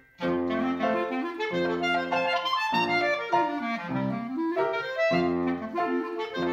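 Clarinet playing a melody with grand piano accompaniment. The notes start about a fifth of a second in, after a brief silence, and there is a quick rising run near the middle.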